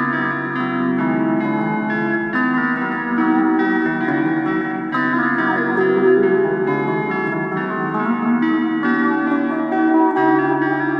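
Instrumental guitar music in a blues-rock style: long held lead notes over a low bass note that changes pitch a few times.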